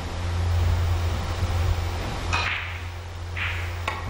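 A single sharp click near the end as a cue tip strikes the cue ball in three-cushion carom billiards, over a steady low hum of the hall and a couple of brief hisses.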